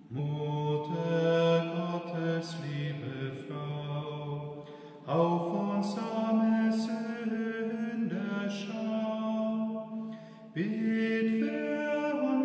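Slow meditative vocal chant sung in long held notes, in three phrases of about five seconds each, the second and third beginning about five and ten and a half seconds in.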